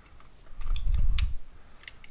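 Plastic parts of a Transformers Studio Series 86 Grimlock action figure being folded by hand: several sharp plastic clicks, with a low rubbing, handling rumble that is loudest in the middle.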